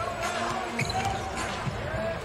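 Basketball being dribbled on a hardwood court, a few separate bounces over steady arena background sound.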